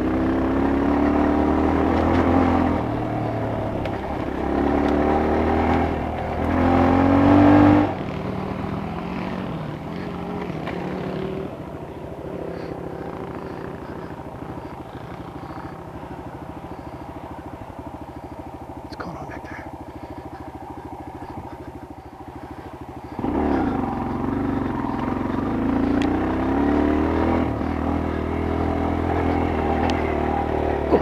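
Dirt-bike engine heard from the rider's helmet camera: it revs up and down through the first eight seconds or so, drops to a quiet, steady low-rpm run for about fifteen seconds, then picks up and revs again.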